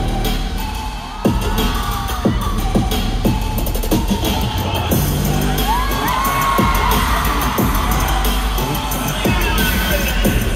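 Loud live concert music over an arena sound system, driven by a heavy bass beat with sharp repeated hits, and a crowd cheering and screaming over it.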